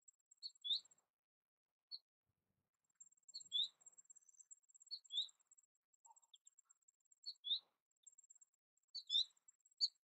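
American goldfinch calling: short, high chirps, mostly in quick pairs, repeated every second or two, with a faint high ticking behind them.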